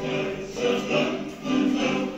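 A song sung by a choir over musical accompaniment.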